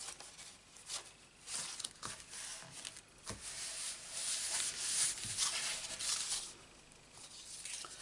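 Card stock rustling and sliding under hands as a layered paper panel is positioned on a card base and smoothed flat with the palms, with a few short scrapes early on and a denser rubbing stretch in the middle.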